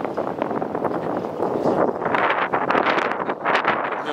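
Strong mountain wind buffeting the camera microphone, a loud rushing and rumbling noise that gusts harder about halfway through.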